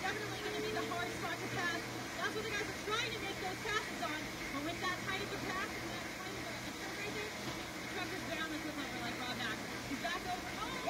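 Indistinct voices and chatter throughout, with a steady low hum underneath.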